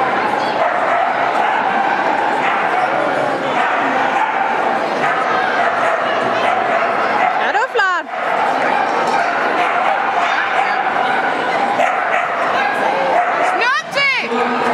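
An excited agility dog barking and yipping as it runs the course, over steady crowd chatter in a large hall.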